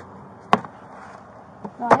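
A single sharp knock about half a second in over steady low background noise, then a man starts speaking near the end.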